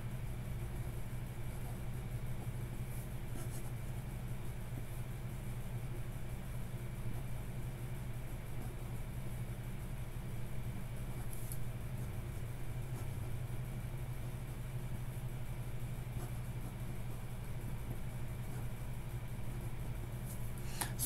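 Steady low machine hum, unchanging throughout.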